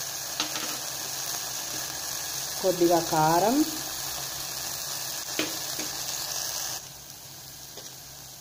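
Tomato mixture sizzling steadily in an aluminium pot on a gas stove, with a few light clicks of a spoon. The sizzle cuts off suddenly near the end.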